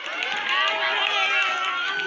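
A crowd of children's voices calling and shouting over one another, with long high-pitched calls that glide upward.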